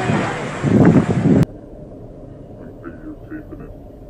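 Loud rushing noise of wind and water spray on a phone microphone beside a boat, surging twice and then cutting off suddenly about a second and a half in. Faint voices follow.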